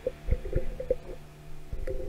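Microphone handling noise: a series of low knocks and rubbing as the slipping hanging microphone is grabbed and steadied by hand.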